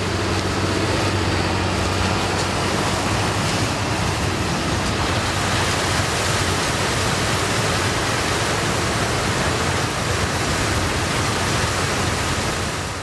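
Combine harvester running while harvesting dry maize: a loud, steady rush of machine noise. A low engine hum stands out in the first few seconds, then blends into the noise.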